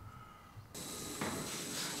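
Faint quiet ambience, then, about three-quarters of a second in, a steady sizzling hiss with a faint high whine starts abruptly: the hot irons of a communion-wafer baking machine cooking the batter.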